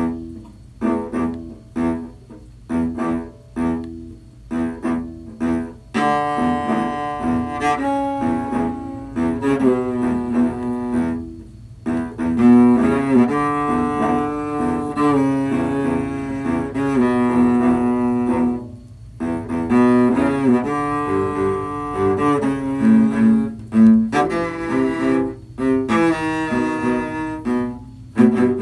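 Cello arrangement of a hockey goal-horn song, played in several parts at once. It opens with short, detached notes, then moves into longer held notes from about six seconds in, with a couple of brief breaks, and returns to short notes near the end.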